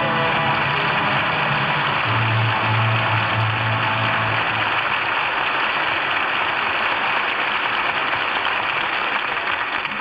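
Studio audience applauding steadily over the tail of an orchestral music bridge, the applause thinning off near the end.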